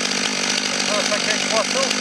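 Stihl MS 500i fuel-injected two-stroke chainsaw idling with a steady hum.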